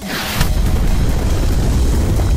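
Explosion: a short hiss of something streaking in, then about half a second in a loud rumbling blast that carries on through the rest.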